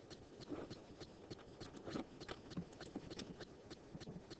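Faint, irregular light clicks and taps, a few a second, from hand input on the drawing software as lines are drawn on screen.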